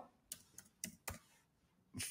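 Computer keyboard keys tapped four times in quick succession, faint, typing a word into a browser address bar, with one more faint keystroke near the end.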